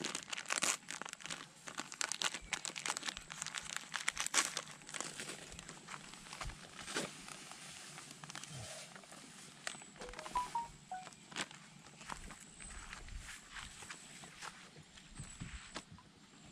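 Plastic crinkling and crackling as it is handled close to the microphone, in a dense run of crackles for the first few seconds that then thins out to scattered ones.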